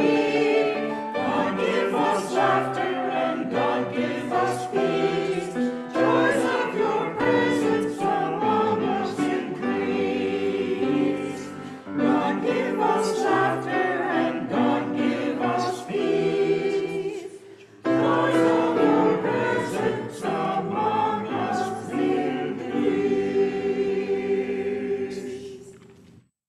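Church choir singing a hymn in phrases, with a short break partway through; the singing fades out and ends just before the close.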